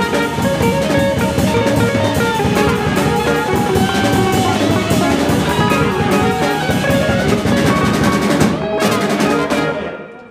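Small jazz ensemble playing: saxophones and trumpets in the melody over electric guitar, upright bass and a busy drum kit. The band stops just before the end.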